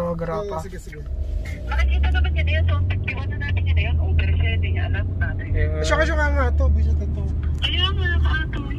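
Low, steady rumble of a car driving, heard from inside the cabin; it swells up about two seconds in and holds. Faint voices sound over it.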